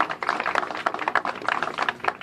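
Dense, rapid, irregular clicking, many clicks a second, at a moderate level.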